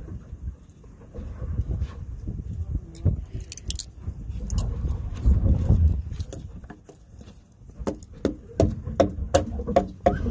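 Handling noise from a handheld camera being gripped and moved, low rubbing and bumping against the microphone, with a run of short sharp clicks and knocks near the end.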